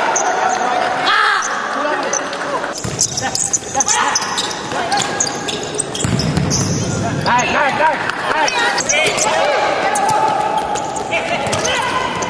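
Futsal ball being kicked and bouncing on an indoor court, with short knocks throughout, mixed with players' shouts echoing in the hall.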